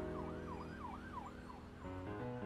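A siren wailing in quick up-and-down sweeps over sustained musical chords, fading out near the end.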